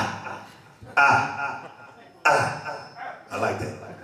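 A man's short wordless vocal calls into a stage microphone with a delay effect switched on. There are four calls, each starting sharply and trailing off over most of a second, the last one weaker.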